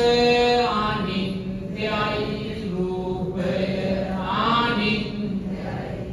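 Buddhist chanting: a voice holding long notes in a slow melodic line, phrase after phrase with short breaths between, over a steady low tone.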